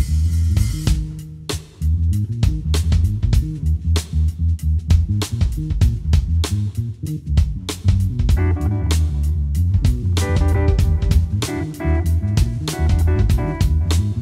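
Live jazz trio playing: electric bass walking the low notes under a drum kit keeping time with steady cymbal strokes, and a Telecaster-style electric guitar coming in with melody notes about eight seconds in.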